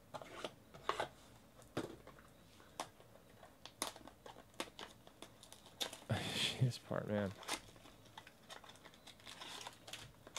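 Plastic wrapping on a trading-card pack crinkling and tearing as it is opened by hand, in scattered sharp crackles. A short stretch of voice about six seconds in is the loudest sound.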